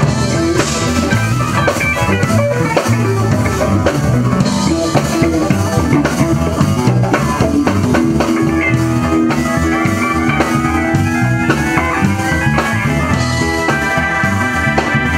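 Live band jamming: electric guitars playing over drums and hand-played congas, with a steady beat throughout.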